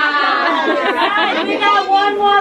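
Overlapping chatter of several people talking at once in a crowded room, with no single voice standing out.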